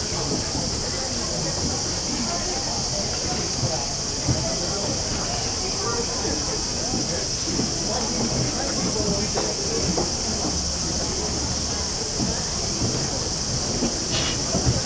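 A steady high-pitched drone of cicadas in the trees, unbroken, over the murmur of a crowd of people chatting and moving about.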